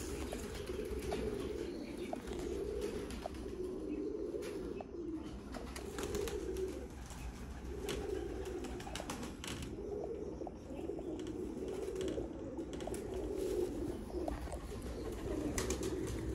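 Domestic pigeons cooing: low, wavering coos repeating about once a second, with a few faint clicks among them.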